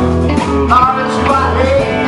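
Live blues band playing: electric lead guitar with bent notes over bass, rhythm guitar and drums.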